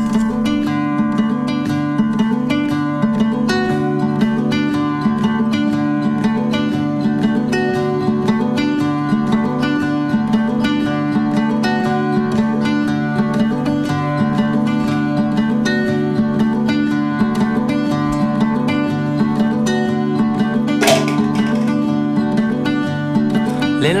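Acoustic guitar music: a steady, repeating pattern of plucked notes.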